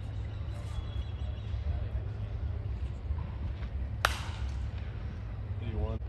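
A pitched baseball smacking into the catcher's mitt: one sharp pop about four seconds in, over a steady low rumble. A voice gives a short call near the end.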